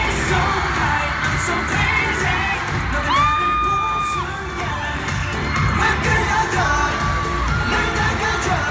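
Live K-pop concert sound: pop music with singing, mixed with a cheering crowd. Two long, high held notes stand out, one about three seconds in and a shorter one near the end.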